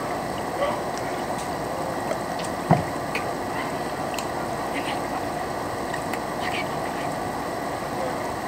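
Air conditioner running with a steady noise, with a single sharp knock nearly three seconds in.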